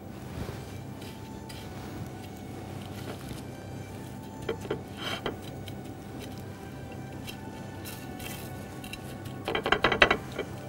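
Quiet background music, with a few light clinks of plates and handling sounds about halfway through and again near the end as lamb chops are pressed into panko crumbs.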